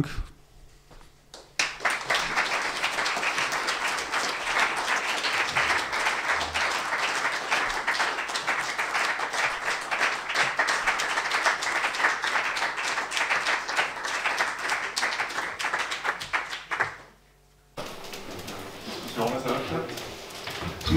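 Audience applauding, starting about a second and a half in and lasting about fifteen seconds before it cuts off abruptly.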